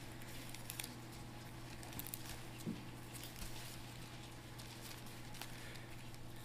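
Faint rustling and soft ticks of Bible pages being leafed through at a pulpit, over a steady low hum.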